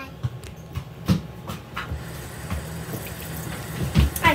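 Scattered light knocks and rustles close to the microphone over a steady low hum.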